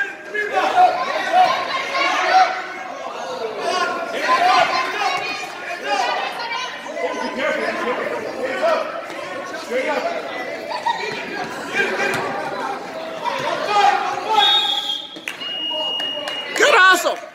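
Many spectators chattering at once in a school gym, with a short steady high tone sounding near the end.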